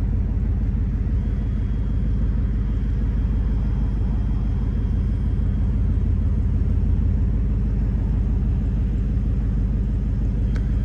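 Ford Mustang Dark Horse's 5.0-litre Coyote V8 idling: a steady, even low rumble.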